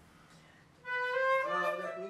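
Concert flute playing a short phrase of held notes, coming in about a second in after a near-quiet moment.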